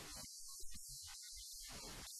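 Very faint, muffled man's voice under a steady hiss and a low hum. The interview's sound track has nearly dropped out.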